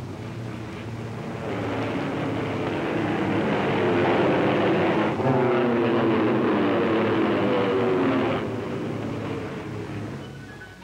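Propeller-driven aircraft flying past: the piston-engine drone builds, peaks and falls in pitch as the planes pass, then cuts down sharply near the end and fades.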